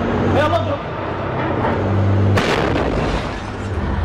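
Combat footage sound: a brief voice about half a second in, a low steady hum, then a loud bang with echo about two and a half seconds in, and another bang at the very end. The bangs fit gunfire or a blast inside a building.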